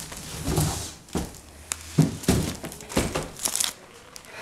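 Clear plastic wrapping crinkling and cardboard flaps scraping as a large plastic-bagged item is wrestled out of its shipping box, in a string of sharp rustles and knocks with low handling thuds.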